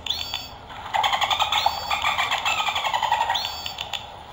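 Recorded bottlenose dolphin whistles and clicks played from a children's sound book's toy camera button. Rising whistles come at the start, about a second and a half in and near the end, with a rapid train of clicks between them.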